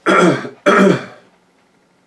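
A man clearing his throat twice in two loud bursts, the second about two-thirds of a second after the first.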